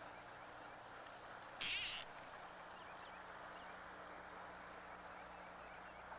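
Faint steady outdoor hiss with a low hum, broken about one and a half seconds in by one short, high, buzzy animal call lasting under half a second.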